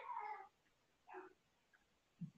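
Faint, high-pitched drawn-out cry that wavers in pitch and ends about half a second in, with a short second cry about a second in.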